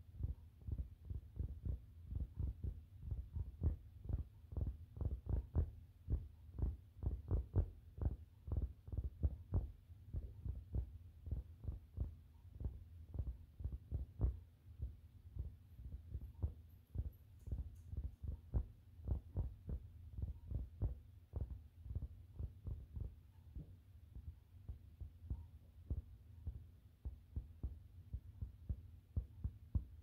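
Soft, dull finger taps from a hand with long nails on a grey fabric surface, about three or four a second, thicker and louder in the first half and sparser and softer later on.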